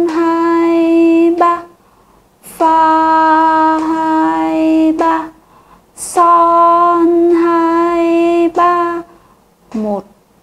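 A woman singing note names in solfège on one steady pitch. Three long held notes, each opening with a short hiss: one already sounding at the start, one about two and a half seconds in and one about six seconds in, each held for about two and a half seconds.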